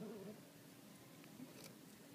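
Near silence, with one brief, faint voice-like call with a bending pitch at the very start.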